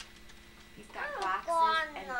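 A child's high voice, drawn out and without clear words, starting about a second in after a quiet first second of room tone.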